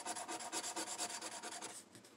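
A coin scratching the coating off a scratch-off lottery ticket in rapid back-and-forth strokes, stopping shortly before the end.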